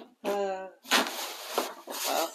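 A short laugh, then about a second of rustling as items in a gift box are rummaged through.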